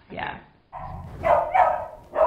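Dog barking, starting just under a second in, with two loud barks in quick succession about halfway through: the distress barking of a dog with separation anxiety.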